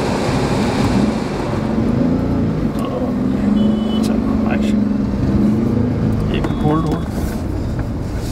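Car engine and road noise heard from inside the cabin as the car drives along, a steady low rumble.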